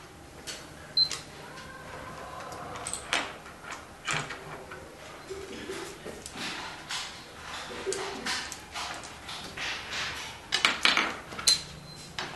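Go stones clacking onto a wooden board and clicking against each other in their bowls. There are scattered sharp clicks, the densest and loudest run coming about a second before the end.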